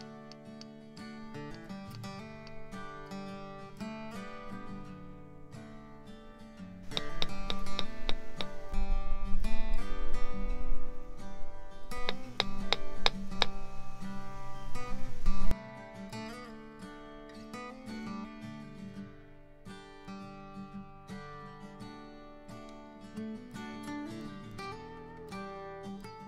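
Background music of strummed acoustic guitar. The music gets louder for a stretch in the middle, then drops back suddenly about halfway through.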